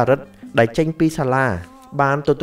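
A man's voice narrating in Khmer, with music faintly under it.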